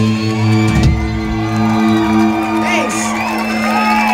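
A rock band's closing chord ringing out as a steady held low note, while audience members whoop and cheer over it, more of them in the second half.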